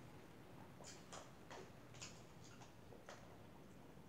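Faint, irregular clicks and taps of a metal fork working spaghetti in a handheld bowl, about nine in a few seconds.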